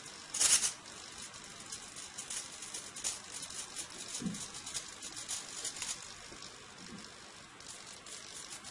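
A small motor tilting a miniature solar panel as it follows the light: faint scattered clicking and rattling, with a short, louder rattly burst about half a second in.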